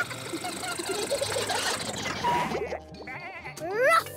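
Cartoon background music with sound effects, ending in a run of quick rising whistle-like glides.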